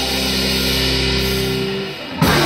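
Live band music: electric guitar and bass hold a sustained chord that fades out near the end.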